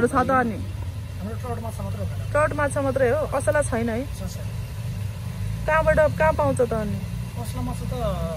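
People talking in short bursts over a steady low rumble.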